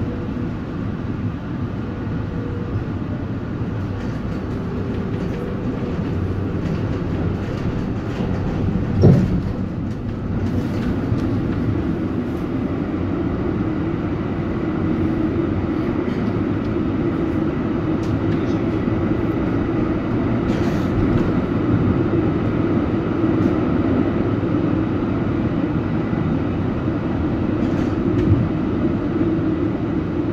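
Thyristor-controlled Valmet-Strömberg MLNRV2 articulated tram running, heard from inside the car as a steady rumble of wheels and motors. A hum comes up from about ten seconds in and holds. There is one sharp knock about nine seconds in and a smaller one near the end.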